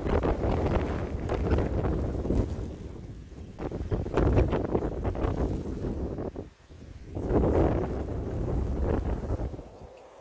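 Snowstorm wind buffeting the microphone in gusts, swelling and easing with brief lulls about three and six and a half seconds in.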